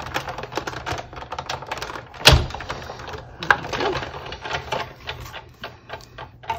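Hand-cranked die-cutting machine rolling a die and cutting plates through its rollers: a dense run of short clicks, with one loud knock a little over two seconds in and a smaller one about a second later.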